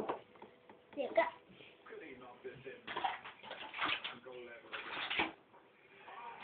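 Soft, indistinct speech mixed with a few sharp knocks and bumps, the loudest about a second in and near the end.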